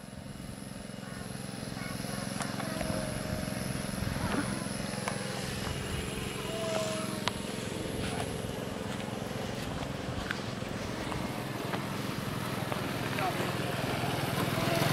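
Outdoor background of distant, indistinct voices over a steady low engine hum.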